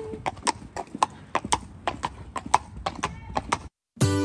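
A horse's hooves clip-clopping at a walk on brick paving, about four hoof strikes a second. The sound cuts off suddenly near the end.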